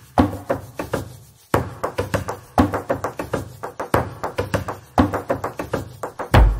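Rhythmic percussion played by hand on a Bösendorfer grand piano's wooden case and inside the instrument: a quick, uneven groove of sharp taps and knocks, each ringing briefly.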